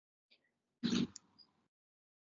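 A woman's short, breathy vocal noise about a second in, a brief breath or throat sound in a pause between her words.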